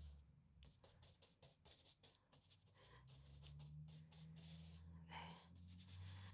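Faint, quick strokes of a paintbrush dabbing and dragging paint across paper, a run of soft short scratches, over a low steady room hum.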